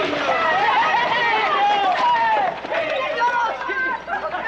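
Several voices calling out and talking over one another in excited greeting.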